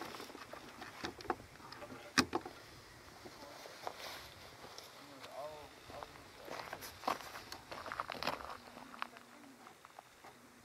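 Faint, indistinct talk from people in the background, with a few sharp clicks and knocks scattered through, the loudest about two seconds in.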